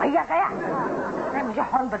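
People's voices talking and chattering, with no separate non-speech sound standing out.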